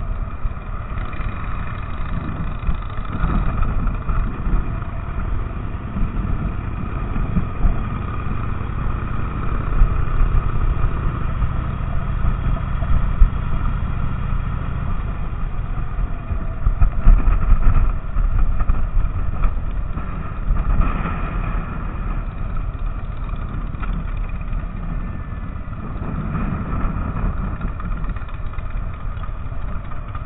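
Touring motorcycle engines running at low speed as the bikes ride slowly and slow toward idle near the end.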